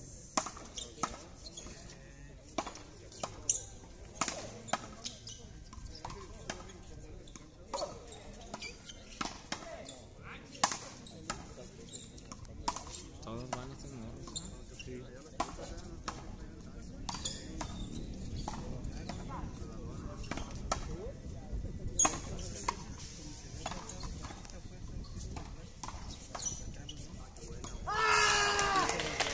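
Frontón rally: a hard ball repeatedly smacking against the court wall and being hit back, a string of sharp, irregular cracks that come thick in the first half and thin out later, with one loudest hit near the end.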